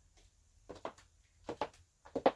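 A few soft footsteps in sandals on a wooden floor, in two pairs: about a second in and again near the end.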